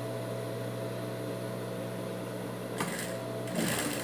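Industrial straight-stitch sewing machine with its motor humming steadily, then two short bursts of stitching near the end as a bias strip is sewn onto the fabric.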